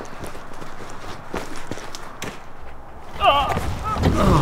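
Footsteps with a few light knocks, then a short voiced exclamation about three seconds in.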